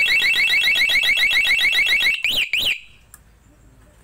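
Aftermarket motorcycle remote alarm's siren speaker sounding a loud, fast-warbling alarm tone, set off from its key-fob remote as the newly installed alarm is tested. About two seconds in the warble breaks off into two quick up-and-down chirps, and then the siren stops.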